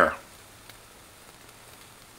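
Methanol alcohol stove with a Super Cat jet burner running at full flame under a pot of water: a faint, steady hiss.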